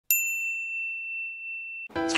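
A chime sound effect over the logo card: one bright ding just after the start that rings on a single high tone for nearly two seconds and then cuts off abruptly.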